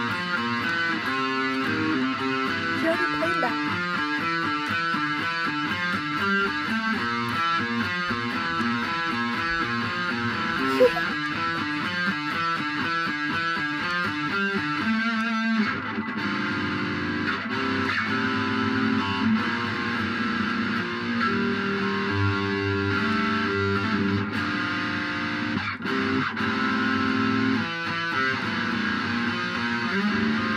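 Solo electric guitar playing a riff: a fast, evenly repeating figure for about the first half, then a switch to a different, lower part with longer-held notes.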